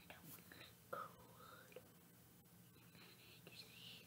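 Near silence: a faint steady room hum with soft whispering.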